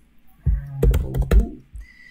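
Typing on a computer keyboard: a quick run of key clicks starting about half a second in, over a low steady hum.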